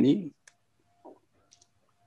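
A man's speech breaks off shortly after the start, followed by a quiet gap with a few faint, short clicks.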